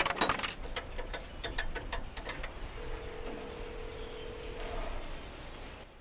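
Coins jingling and clicking at a pay phone for the first two and a half seconds or so, then a single steady phone tone held for about two seconds.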